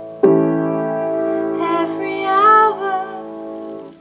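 A Yamaha piano playing a sustained A seventh chord (A, C sharp, E and G over A and E in the bass), struck together about a quarter second in and left to ring and slowly fade. Around the middle a woman's voice briefly sounds a short wordless phrase over the ringing chord.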